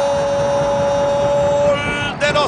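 A football TV commentator's long held "gol" shout, sustained on one steady pitch and breaking off near the end, over stadium crowd noise.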